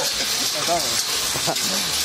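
A steady high-pitched hiss, with faint voices talking in the background.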